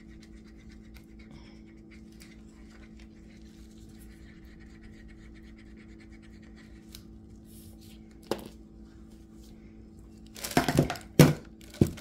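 A stir stick scraping in a mixing cup of thick pigmented epoxy resin, faint at first, then a few loud knocks and scrapes near the end. A steady low hum runs underneath.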